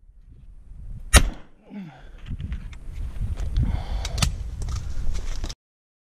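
Two 12-gauge shotgun shots, a loud one about a second in and a weaker one some three seconds later, over a low rumbling noise.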